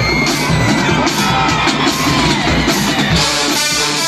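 College marching band music, with drums under crowd yelling and cheering. The brass section comes in with loud held chords about three and a half seconds in.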